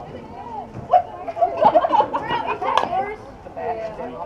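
Softball bat hitting the ball with a sharp crack about a second in, followed by high-pitched shouting and cheering from players and spectators as the ball is put in play.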